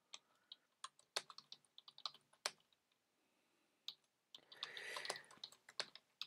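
Typing on a computer keyboard: scattered single keystrokes, faint, with a pause of about a second midway before the keys start again.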